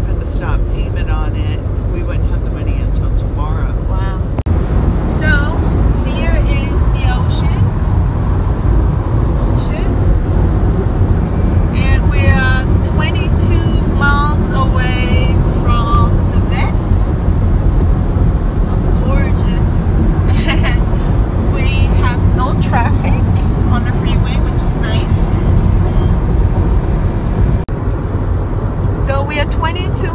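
Steady low road and engine rumble inside a car cabin at highway speed, with voices talking on and off over it.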